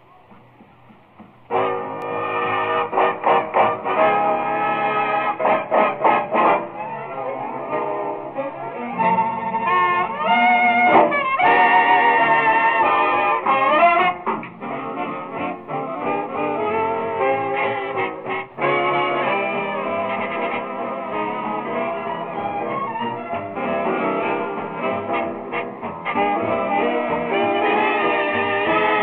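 A 1940s swing big band playing an instrumental, with the brass section out front over drums and rhythm section. The band comes in about a second and a half in. The sound is thin and lacks top end, as on an old broadcast recording.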